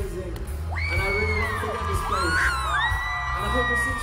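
Live pop band playing a steady bass-and-drum groove, with long, high held vocal notes that bend and glide above it, and whoops.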